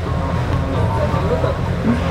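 Twin-engine motor catamaran under way: a steady low rumble of its engines mixed with wind and water noise, with faint music and voices behind it.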